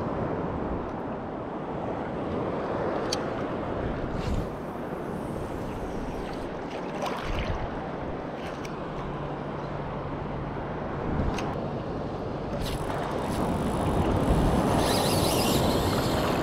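Wind on the microphone over the steady wash of shallow surf water, with a few scattered faint clicks and knocks; the noise grows a little louder near the end.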